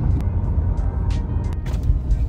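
Low, uneven road and engine rumble of traffic heard from inside a moving car, with a large bus running close alongside. A few short clicks are scattered through it.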